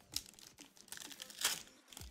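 Foil wrapper of a Magic: The Gathering collector booster pack crinkling as it is handled, with two louder crackles, one just after the start and one about a second and a half in.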